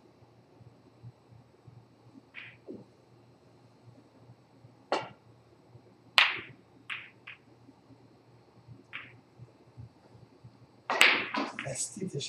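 Snooker balls clicking on a full-size table: the cue strikes the white, which runs down the table and hits a red with a sharp click, followed by a few lighter ball-on-ball and cushion knocks. Near the end comes a louder, denser run of sounds.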